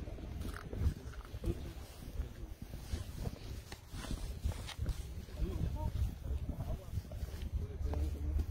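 Quiet, indistinct voices murmuring over footsteps through long grass, with a steady low rumble from the handheld camera being carried.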